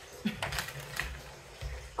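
A few light, irregular clicks and taps of plastic board-game parts being handled.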